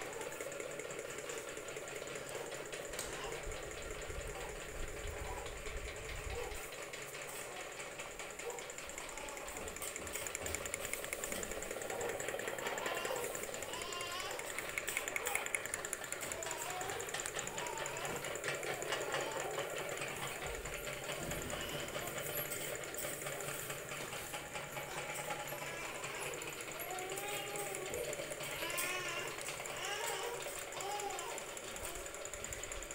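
Kerosene-fired hot-air engine fans running on the heat of their flames, giving a fast, even mechanical clatter under the whir of the spinning blades.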